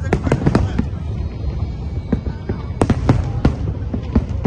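Large aerial fireworks display: shells bursting in a rapid, irregular run of sharp bangs over a continuous low rumble. The bangs come in a thick cluster at the start and again about three seconds in.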